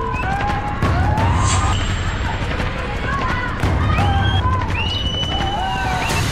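A group of children's voices chattering and calling out over one another, with no clear words.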